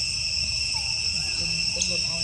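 Steady insect chorus in the forest canopy: a continuous high-pitched ringing held in a few even tones.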